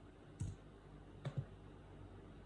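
A few clicks of a computer keyboard and mouse: a single click about half a second in, then two close together just before a second and a half.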